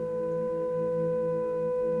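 Calm meditative background music: one held, steady tone over a low sustained drone.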